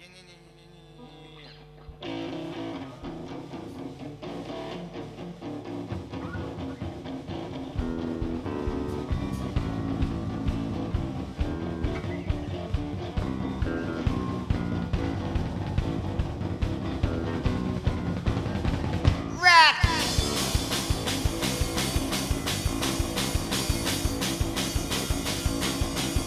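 Live rock band (electric guitar, bass guitar and drum kit) playing a song that starts quietly and builds in stages, about two seconds in and again near eight seconds. A quick falling sweep a few seconds before the end leads into a louder, fuller section with steady drum beats.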